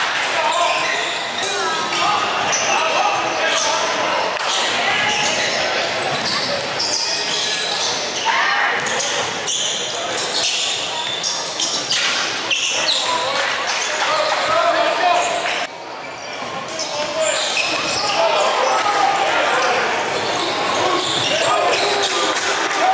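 A basketball bouncing on a hardwood gym court, with indistinct voices of players and onlookers in a large gym.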